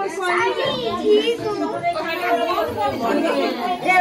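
Lively overlapping chatter of a group of women and children talking and calling out all at once.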